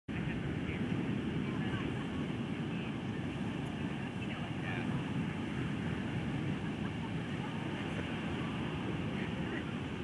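Steady low rumble of wind on the microphone, even throughout, with faint voices in the background.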